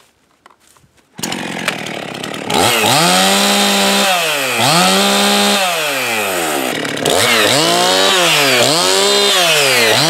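Two-stroke Husqvarna 55 chainsaw starting about a second in, idling briefly, then revved up and down repeatedly with the throttle held wide open in stretches, warming up before a test cut.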